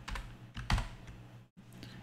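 Computer keyboard keystrokes: a few short clicks, one clearly louder about a second in, over a low steady hum.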